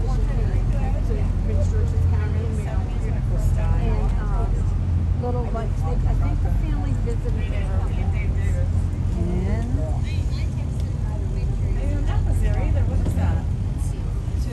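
Steady low rumble of a river boat's engine under way, with passengers chattering indistinctly over it.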